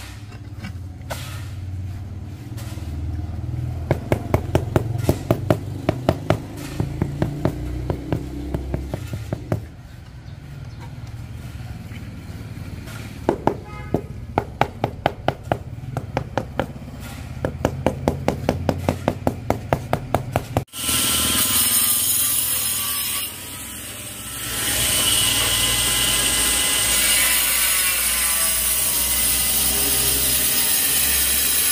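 A rubber mallet tapping a ceramic floor tile down into its mortar bed, in three runs of quick taps about two a second. About two-thirds of the way through this gives way abruptly to an angle grinder cutting through a ceramic tile, a loud steady whine that dips briefly, then runs on.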